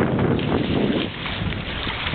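Wind buffeting the microphone aboard a sailing catamaran, with the wash of water along the hulls.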